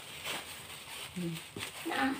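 Clear plastic candy-wrapper sheets rustling and crinkling softly as they are handled and cut by hand, with a click about one and a half seconds in. A short hum from a person comes about a second in.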